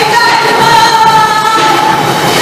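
A woman singing a worship song into a microphone, holding one long note that moves lower near the end.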